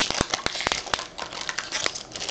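Foil baseball card pack wrapper crinkling and crackling in the hands as it is torn open and the cards are slid out: a quick run of sharp crackles, thickest in the first second.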